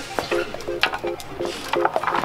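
Long dried chew sticks clattering and knocking against each other in a wooden holder as a dog's leash drags across them, over background music with a quick staccato beat.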